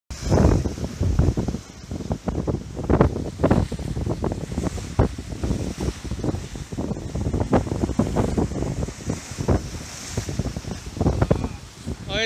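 Surf breaking and washing against jetty rocks, with strong wind buffeting the microphone in irregular low rumbling gusts.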